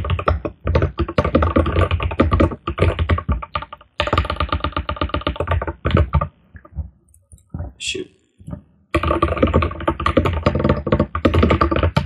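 Fast typing on a computer keyboard, rapid runs of keystrokes with a pause of about two seconds past the middle.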